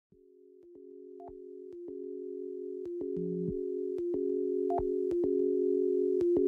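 Electronic drone like a telephone dial tone, a steady chord of low tones fading in from silence and growing louder. It is broken by a short click roughly once a second, with a couple of brief higher beeps and one short lower tone.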